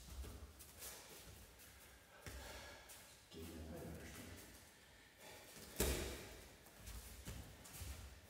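Bare feet stepping and shuffling on foam grappling mats as two people clinch, with cloth rustling and a soft breath or murmur. About six seconds in comes one sharp slap or thud, the loudest sound.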